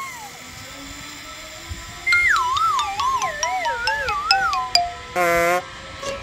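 Edited-in comic sound effect: about two seconds in, a wobbling tune slides downward in steps for nearly three seconds, then a short buzzing honk sounds near the end.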